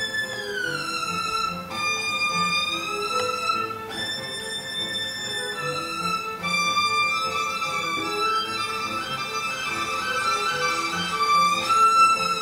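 Solo violin playing a slow phrase of long, high held notes that slide smoothly from one pitch to the next, over a quieter low repeating accompaniment.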